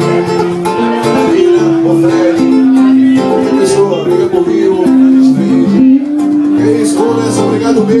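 Live band music: acoustic guitar and electric bass playing, with long held sung notes over them.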